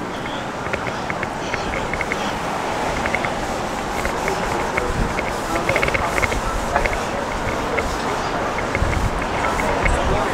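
Street ambience while walking outdoors: a steady wash of noise with faint voices and music in the background.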